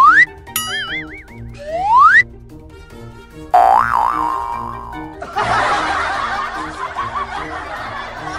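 Cartoon comedy sound effects laid over light, rhythmic background music: two rising slide-whistle swoops about two seconds apart with a wobbling boing between them, then a falling, wobbling boing about three and a half seconds in. From about five seconds in, a burst of laughter joins the music.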